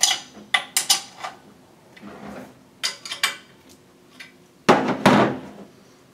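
Metal clinks and clicks of a small hand wrench on the bolts of a Taco 1900 series pump's cast-iron bracket as it is fastened back onto the motor. The clicks come in a quick cluster at first, then a few more, with a louder clatter of metal about five seconds in.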